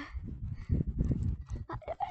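Wind buffeting and handling noise on a handheld phone's microphone as it is jostled about: an irregular low rumble with scattered small knocks.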